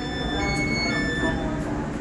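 Electric multiple-unit train standing at the platform, its onboard equipment giving a steady low hum with a few thin, steady high tones over it.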